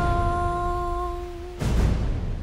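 One voice holding a single long sung note that closes a slow song and stops about one and a half seconds in. A deep boom sounds as the note begins, and another deep boom comes just after the note ends.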